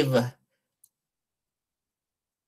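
A man's lecturing voice trails off at the very start. About a second in comes a single faint click of a computer mouse, then dead silence.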